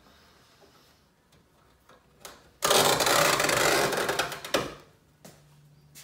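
Metal screen mesh being torn by hand along a folded crease: a loud ripping sound lasting about two seconds, starting near the middle and tailing off.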